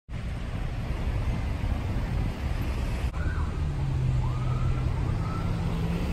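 Outdoor street ambience dominated by a steady low rumble of idling vehicle engines, with a low engine hum settling in about halfway and a faint rising tone in the middle.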